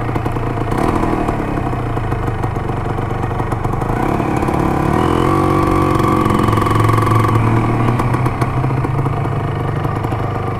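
1975 Can-Am 250 TNT's two-stroke single-cylinder engine ticking over, then rising in pitch as the throttle opens about four seconds in. It holds the higher revs for a few seconds before easing off near the end as the bike moves up.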